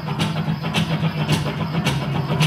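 Live acoustic folk-rock band playing an instrumental passage: strummed acoustic guitars and mandolin over a heavy, sustained low bass, with a sharp percussion hit about every half second.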